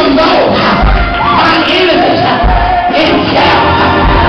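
A preacher's sung, chanted sermon delivery into a microphone over church music with heavy bass notes about every one and a half seconds, and the congregation shouting back.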